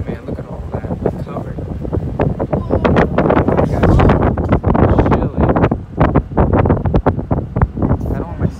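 Heavy wind buffeting and crackling on the microphone from riding in the open bed of a moving pickup truck, swelling louder after about two seconds.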